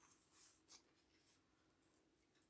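Near silence: room tone, with a couple of faint short ticks in the first second.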